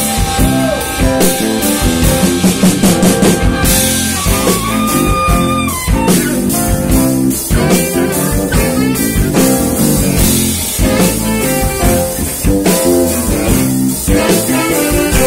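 A live funk band playing an instrumental passage with saxophone, electric guitar and drum kit, with a steady beat.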